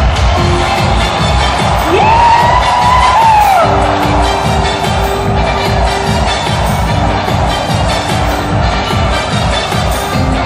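Live dance-pop music from a concert sound system, with a steady electronic beat and held synth chords, over a crowd cheering.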